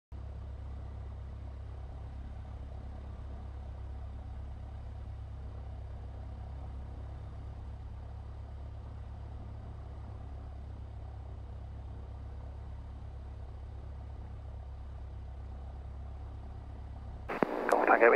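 Light aircraft's piston engine running steadily while held at the runway holding point, heard as a low even drone. A radio transmission from the tower begins near the end.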